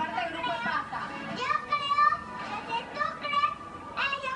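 A young boy's high-pitched voice speaking into a microphone, with music underneath, heard through a television's speaker.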